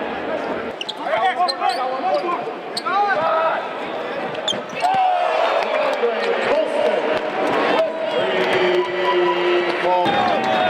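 Arena court sound during a college basketball game: a basketball bouncing on the hardwood, sneakers squeaking, and players' and crowd voices over the hall's echo. A steady held tone sounds for about a second near the end.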